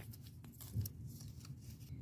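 Faint rustling of a paper cut-out being pushed into a small plastic toy purse, with a few light handling ticks.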